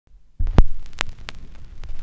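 Stylus on a vinyl LP's lead-in groove: a low hum begins about half a second in, with a few sharp pops and clicks from the record surface, the first one the loudest.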